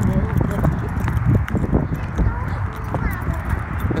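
Strong wind buffeting the microphone with a low rumble, over footsteps on asphalt as people walk across a parking lot. Faint voices come through in places.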